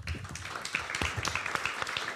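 Audience applauding, starting suddenly and going on steadily with many hands clapping at once.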